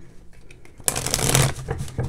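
A deck of cards being shuffled by hand: a short crackling riffle about a second in, lasting about half a second, with a few light card clicks around it.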